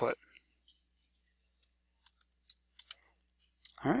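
A handful of light computer-keyboard keystrokes, spaced irregularly over about a second and a half in the middle, as a word is typed.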